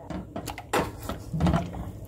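Silicone spatula scraping and sliding across the bottom of a stainless steel saucepan while stirring a thin milk-based cream on the heat, in a few short strokes. The stirring keeps the cream from sticking to the bottom of the pan.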